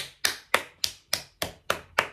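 One person clapping their hands in a steady rhythm, about three and a half claps a second.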